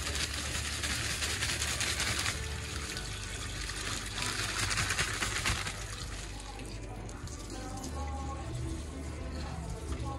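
Water from a hose splashing into the tub of a top-loading washing machine as it fills, louder in two stretches in the first half, then quieter.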